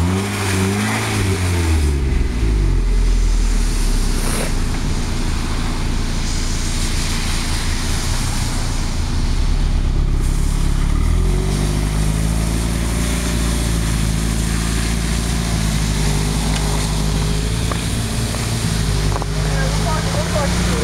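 Mazda Miata's engine revving hard and held at high revs while its summer tires spin for grip on snow. The pitch climbs near the start, settles, then rises again about eleven seconds in and holds steady.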